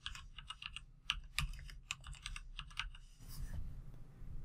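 Typing on a computer keyboard: a quick, irregular run of keystrokes for about three seconds, then it stops.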